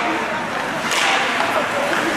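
Ice hockey play in an echoing rink: skates scraping on the ice under shouted voices, with one sharp crack about a second in.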